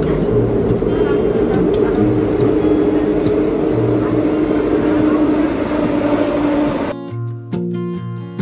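Subway train running, a loud steady rumble of the carriage heard from inside the car, with background guitar music underneath. About seven seconds in, the train noise cuts off suddenly, leaving only the guitar music.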